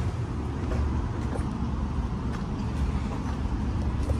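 Steady outdoor background rumble, deep and even, picked up by a handheld camera's microphone while walking, with a few faint ticks.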